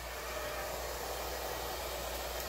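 Hair dryer running steadily, blowing fluid acrylic paint across a canvas in a blowout.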